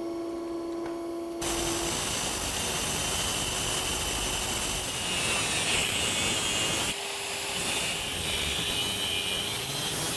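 Angle grinder with a 4-inch cutoff wheel cutting through the shaft of a Warp 11 electric motor, the shaft being spun by a 12-volt battery so that the cut comes out true. A steady hum at the start gives way about a second and a half in to the steady grinding, which changes abruptly about seven seconds in.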